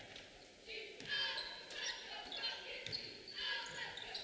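Basketball being dribbled on a hardwood gym floor, heard faintly, with distant voices in the gym.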